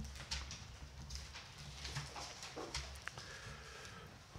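Faint, irregular rustles and soft taps of a Bible's thin pages being turned and pressed flat on a lectern, a few separate small sounds over a low room hum.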